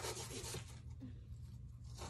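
A knife scraping and cutting into a crumbly excavation block, a rasping that is loudest for about the first half second, then thins to faint scratching.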